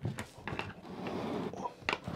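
Hands handling a cardboard camera box as its lid is worked open: fingertips click and scrape at the edge, there is a stretch of soft rubbing as the lid slides, and a sharp tap comes near the end.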